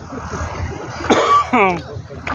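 A man coughing: a harsh burst about a second in, followed by a short voiced sound falling in pitch.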